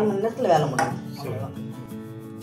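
Kitchen dishes clinking a few times on a counter, over background music with a singing voice in the first second.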